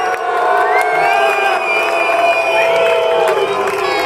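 A crowd of many voices shouting together, with long drawn-out calls overlapping each other.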